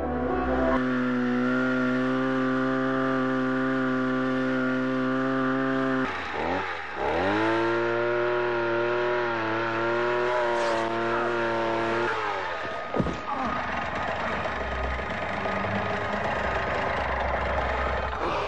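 Light aircraft engine droning steadily. Its pitch dips and climbs back about six to seven seconds in, and it gives way to a rougher rushing noise for the last several seconds.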